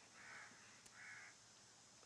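A crow cawing twice, faintly: two short, harsh calls about three-quarters of a second apart.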